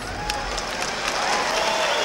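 Concert audience applauding, growing steadily louder, with a few voices in the crowd.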